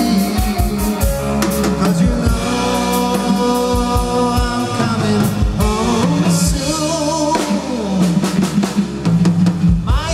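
Live rock band playing: drum kit with cymbals, bass guitar and electric guitar.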